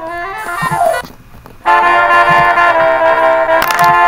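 Saxophone playing a short run that rises in pitch, then a brief pause, then a loud sustained blast of held brass notes lasting about two seconds, breaking off briefly near the end.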